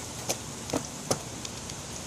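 A few short footsteps on pavement as someone jogs up close, over a steady hiss.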